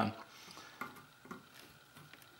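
A few faint, short clicks of small cutters being handled and set against a resistor lead on a circuit board.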